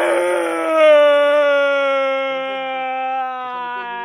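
A man's voice holding one long, loud open-mouthed yell, its pitch sinking slowly and gently as it goes on.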